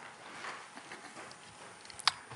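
Quiet hall room tone with faint scattered taps and rustles.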